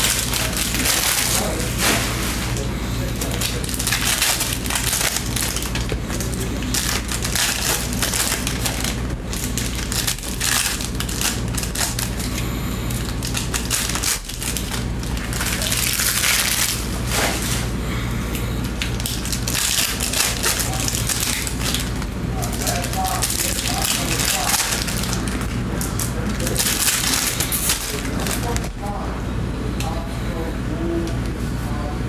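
Plastic foil trading-card pack wrappers crinkling as packs are torn open and the cards handled. The crackling comes in several louder stretches over a steady low hum.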